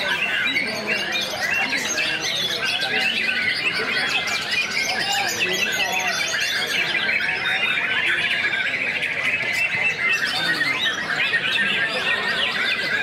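Caged white-rumped shamas (murai batu) singing against one another in a songbird contest: a dense, continuous tangle of overlapping whistles, trills and chattering phrases from many birds at once, with a fast repeated trill standing out about eight seconds in.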